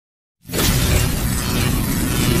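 Channel intro sound effect: silence, then about half a second in a sudden loud, dense hit that carries on as a steady wash of sound.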